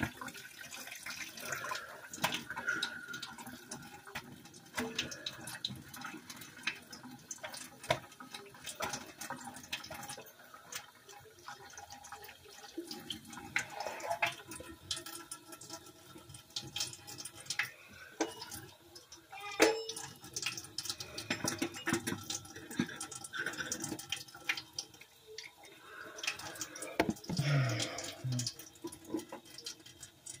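Kitchen sink tap running while dishes are washed by hand, with frequent clinks and clatters of dishes knocking together, the sharpest one about two-thirds of the way through.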